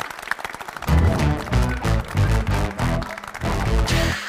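Game-show segment jingle: loud electronic music with a heavy, pulsing bass beat that kicks in about a second in, over studio applause.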